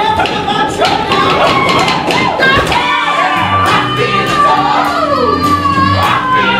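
Musical-theatre ensemble whooping and shouting over a live band, then singing together on a long held note from about halfway in, with the band's bass and drums underneath.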